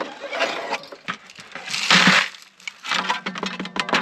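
Dry concentrates being emptied from a Keene dry washer's riffle tray into a plastic bucket: a gritty rattle and hiss of sand and small gravel with scattered clicks, loudest in one rush about halfway through.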